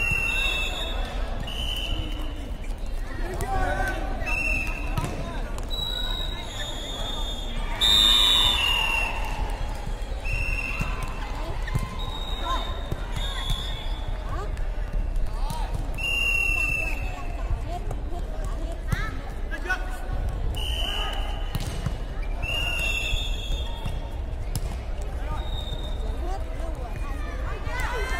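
Indoor women's air volleyball rally: many short high squeaks and scattered knocks of play on the court, with players' voices, in a large echoing sports hall.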